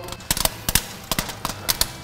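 Popcorn kernels popping inside a rotating carbon-steel rotisserie basket on a gas grill: a rapid, irregular run of sharp pops.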